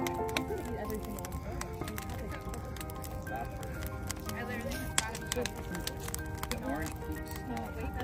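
Bonfire of large logs crackling, with irregular sharp pops, under soft background music and distant voices.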